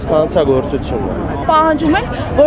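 Speech only: a man talking in Armenian.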